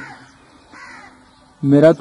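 A faint single bird call, harsh and about half a second long, in the middle of a pause between men's speech.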